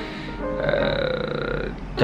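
A man's drawn-out hesitation sound, one held "uhh" lasting about a second, over background music.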